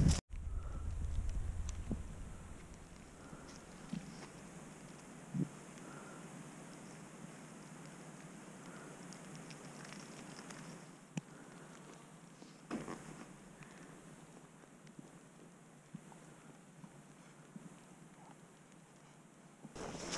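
Faint wind noise with soft footsteps on wet moorland turf, about one step every second or so, and a few isolated clicks.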